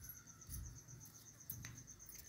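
Faint, high-pitched insect chirping, repeating evenly about ten times a second, over a low rumble, with a light click about one and a half seconds in.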